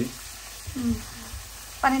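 Sliced onions and green chillies sizzling in oil in a nonstick wok, stirred with a wooden spatula.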